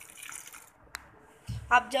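A small splash of water poured into a blender jar onto dried red chillies, garlic and salt, lasting about half a second. A sharp click follows about a second in, then a low thump just before a woman starts speaking.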